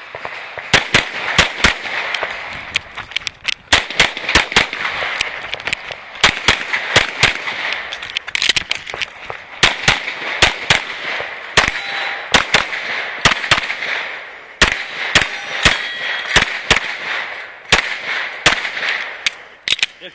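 Race pistol with a compensator and red-dot sight firing fast strings of shots, several a second, starting about a second in and broken by short pauses as the shooter moves between targets during a timed stage. A few short metallic rings come from steel plates being hit.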